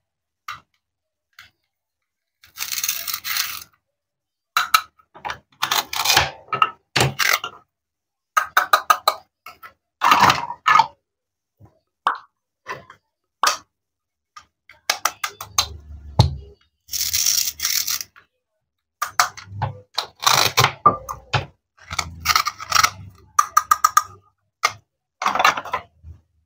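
Plastic and wooden toy cutting fruit being handled: repeated short rasping rips as the hook-and-loop-joined halves are pulled apart, mixed with clicks and knocks of the pieces and the wooden toy knife against a wooden cutting board.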